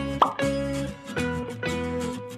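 Background music of light plucked, guitar-like notes, with a quick rising 'bloop' sound effect about a quarter second in.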